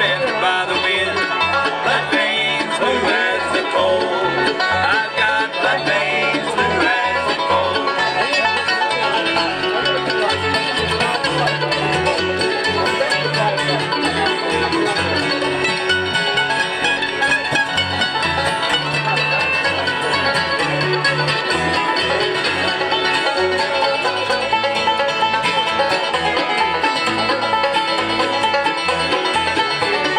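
Acoustic bluegrass band playing an instrumental break, banjo to the fore over fiddle, mandolin, acoustic guitar and an upright bass keeping steady notes underneath.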